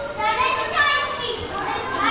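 Many children's voices in an audience, chattering and calling out over one another.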